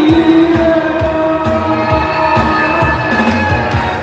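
Amplified Korean trot song: a woman's voice holds a sung note that fades in the first second, then the instrumental accompaniment carries on with a steady beat.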